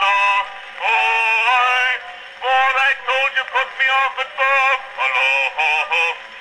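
Male voice singing a comic song from a 1901 Edison Concert wax cylinder, played acoustically through the horn of an 1899 Edison Concert Phonograph. The sound is thin and bass-less, with a long held note about a second in and another near the middle.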